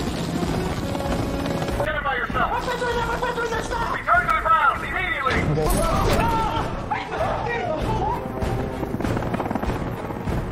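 Film soundtrack: dramatic orchestral score over the rumble of a police helicopter's rotor, with people's voices crying out over it from about two seconds in.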